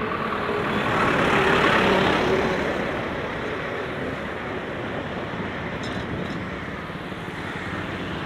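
A bus overtaking from behind: its engine and tyre noise swell to a peak about two seconds in, then fade as it pulls ahead, leaving steady road traffic noise.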